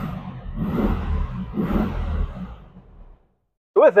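1967 VW Beetle's air-cooled flat-four engine and road noise heard from inside the cabin while driving, the engine note swelling twice under throttle. The sound cuts off about three seconds in.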